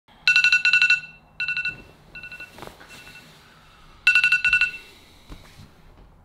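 An electronic alarm going off to wake a sleeper: bursts of rapid, high beeps, loud near the start, then shorter and fainter bursts, then loud again about four seconds in.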